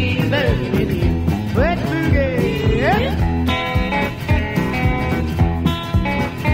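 Blues-rock band music in an instrumental break with no singing: electric guitar lines with pitch bends, then held chords, over a steady bass and drum beat.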